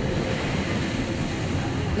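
Steady rushing noise, like wind and surf on a beach, from the TV episode's soundtrack.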